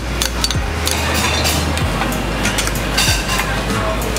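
Music playing, with several sharp clinks of a metal spoon against a glass dessert cup and steel bowl as shaved ice is scooped and packed.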